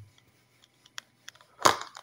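Handling noise from a bar of soap being turned in the hand over its cardboard box: a few faint clicks, then one short, loud thump about three quarters of the way through.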